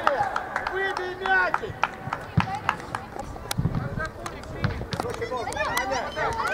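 Players and coaches calling out on a football pitch, with scattered sharp clicks and a few dull thumps in the middle.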